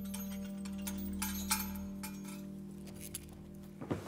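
Soft background music with long held notes that slowly fade. Over it come several light metallic clinks from the silver Torah breastplate and its chains being handled, the loudest about a second and a half in.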